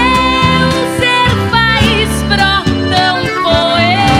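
A live gaúcho folk song: a woman singing long held notes over acoustic guitar accompaniment.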